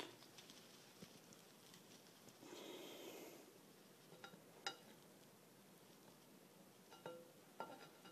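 Near silence: room tone with a soft rustle and a few faint, light clicks as a caliper and frying pan are handled.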